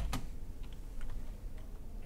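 Computer keyboard typing: a few key clicks, the loudest two at the very start, then a few fainter taps.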